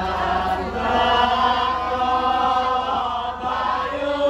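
Javanese chant-style singing in long, drawn-out held notes, over a steady low hum.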